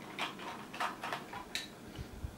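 Screwdriver tightening small screws into the underside of a 1:18 scale diecast model car: a run of faint, irregular clicks, a few a second, as the screws are turned home.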